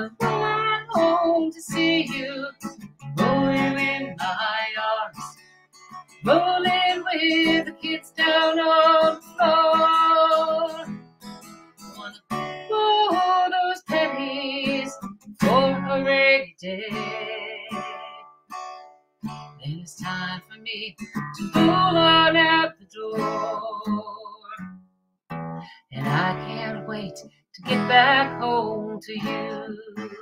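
A woman singing to her own strummed acoustic guitar, in phrases a few seconds long with held, wavering notes.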